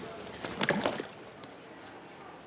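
A short burst of splashing and knocking about half a second in: a man falling at the edge of a swimming pool and a mobile phone dropping into the water, with a brief cry mixed in.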